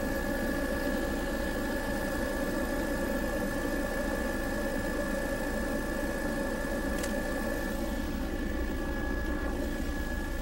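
Steady engine drone of a low-flying survey aircraft, heard from inside the cabin, with a high whine running through it. A single faint click comes about seven seconds in.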